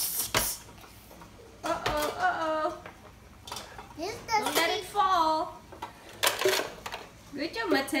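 A toddler's voice making short wordless vocal sounds in three bouts, between a few sharp knocks and clatters from a hard plastic toy garbage truck being handled.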